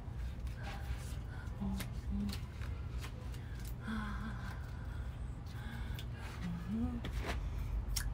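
A woman's short, faint murmurs and hums, with a few scattered clicks, over a steady low hum.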